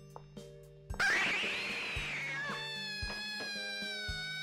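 A cat's sudden loud screech about a second in, a film jump-scare sound over sustained eerie horror-score tones. A long high wail slowly falling in pitch follows.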